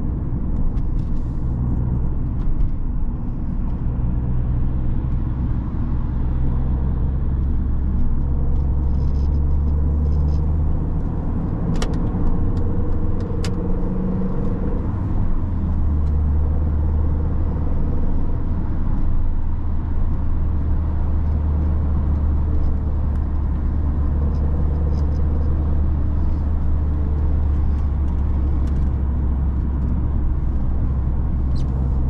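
Cabin sound of a 2001 Mini One R50's 1.6-litre four-cylinder petrol engine pulling the car along at a steady road speed, a constant low drone with tyre and road noise. Midway the drone eases for a few seconds and a rising engine note comes in, with two short clicks.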